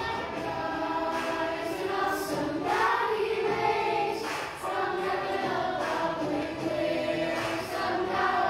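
Children's choir singing a song together.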